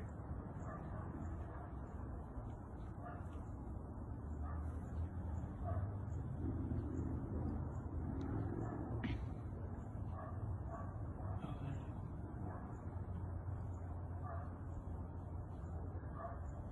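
A steady, low, distant hum, which the people filming take for the sound of a bright light in the sky that they first called a drone. Short, faint calls come and go over it.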